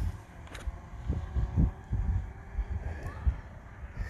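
Outdoor background noise: a low, uneven rumble with irregular swells and a faint steady hum above it.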